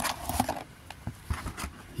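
Rustling and light knocks and scrapes of a clear plastic display tray being handled and lifted out of a cardboard box, with a noisy rustle at the start and scattered small clicks about a second and a half in.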